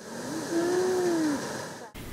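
Outdoor ambience with a steady background noise and one drawn-out call that rises slightly and then falls, lasting about a second, like a distant voice.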